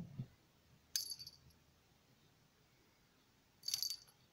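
Small bell on a cat's collar jingling briefly twice, about a second in and again near the end.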